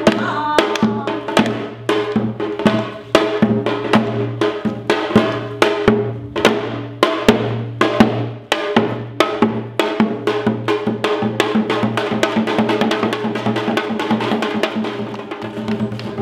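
Korean traditional percussion music: a dense run of drum strokes over a steady low tone, the strokes coming faster and closer together in the second half.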